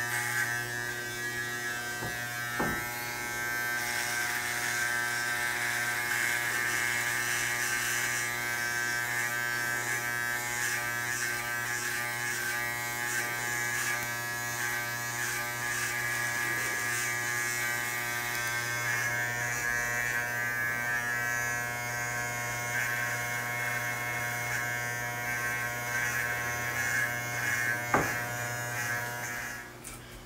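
Corded electric hair clippers buzzing steadily as they cut through hair on a man's head, with a couple of short knocks, one near the start and one near the end. The buzzing cuts off just before the end.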